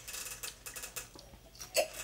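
Faint mouth sounds of people downing shots and biting lemon wedges: a short slurp at the start, scattered light clicks, and a brief grunt near the end.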